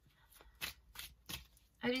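A deck of tarot cards being shuffled by hand: a handful of short, soft card clicks, with a woman's voice starting near the end.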